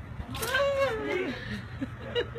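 A high-pitched cry lasting about a second, wavering and then falling in pitch at the end, over a low steady street rumble.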